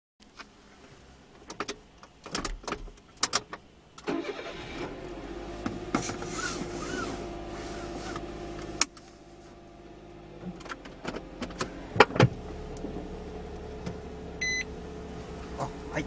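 Inside a car: a few clicks and knocks, then the engine starts about four seconds in and runs at idle, with more clicks and a short electronic beep near the end.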